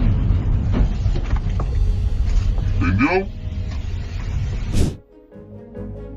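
Road and engine rumble inside a moving car driving past an overturned semi-truck, with a person's exclamation about three seconds in. A sharp crackle near five seconds, then the sound cuts to a quieter passage with steady tones and rapid ticks.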